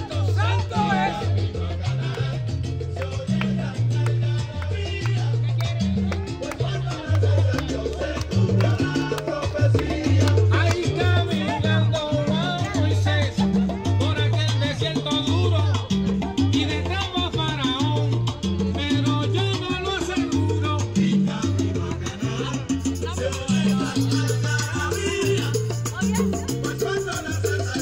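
Christian salsa music: a voice singing over a repeating, syncopated bass line, with a steady dance rhythm throughout.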